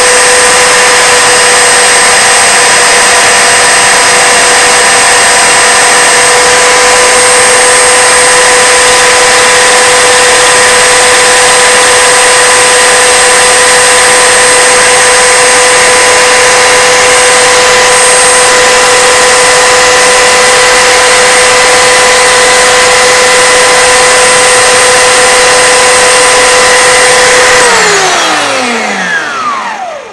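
Bench belt sander running loud and steady, with a small wooden axle pin held against the moving belt to sand and chamfer its end. Near the end the motor is switched off and winds down, its hum falling in pitch as it fades.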